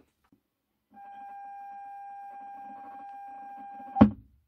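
A steady electronic beep played over the car audio, starting about a second in and held unchanged for about three seconds, then cut off by a loud short pop: the USB Bluetooth audio receiver's tone as the phone connects to it.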